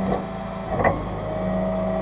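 Rollback tow truck's diesel engine running steadily while the hydraulic bed tilts back, a higher whine from the hydraulics joining about a second in. A brief knock a little under a second in.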